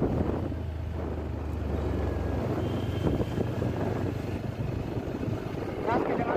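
Motorcycle engine, the single-cylinder of a TVS Apache RTR 160 4V, running steadily on the move, with wind and road noise. Its note rises a little about halfway through.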